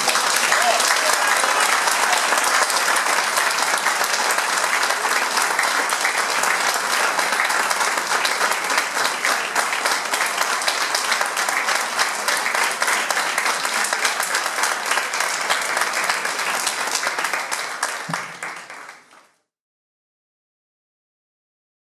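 Audience applauding, many hands clapping steadily at the close of a talk. It fades out quickly near the end.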